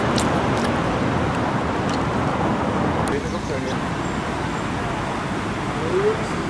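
Steady noise of road traffic from a city street, with a faint voice about halfway through.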